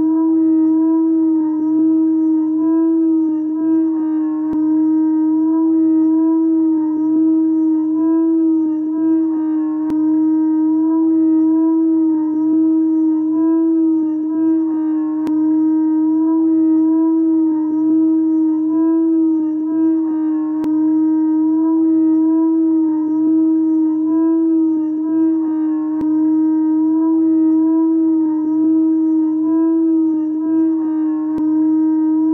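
A dog-like howl held on one steady pitch without a break, wavering only slightly.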